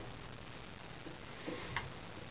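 A few faint, light clicks in a quiet room, mostly in the second half, from the metal and strap of a bow press being handled while it is fitted to a compound bow.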